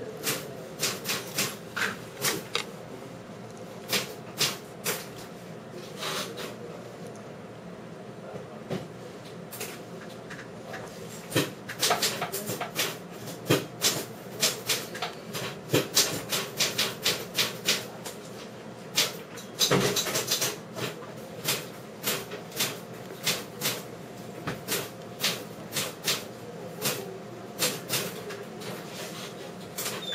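Irregular, typewriter-like clicking: sharp clicks and taps, often several a second, coming in quick runs with short gaps between them.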